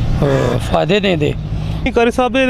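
A man speaking, over a steady low rumble in the background.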